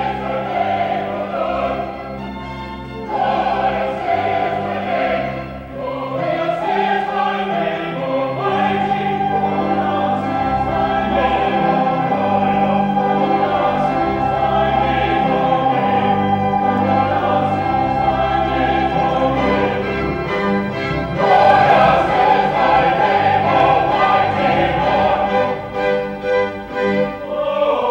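Mixed choir singing classical sacred music with a string ensemble, with a long held note through the middle and a fuller, louder passage near the end.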